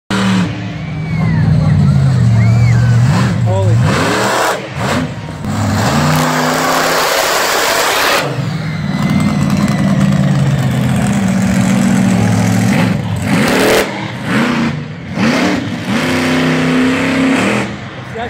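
Monster truck engine revving hard on the track, its pitch climbing and falling again and again as the throttle is worked, with short dips between runs.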